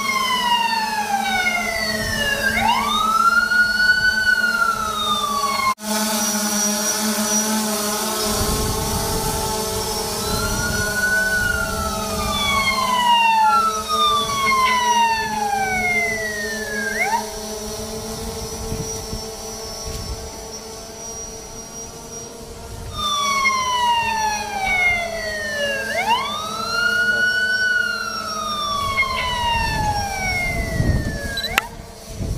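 Electronic siren wailing in repeated sweeps, each falling then swooping back up in pitch, over a steady low hum; the sweeps fade out for several seconds past the middle and then return.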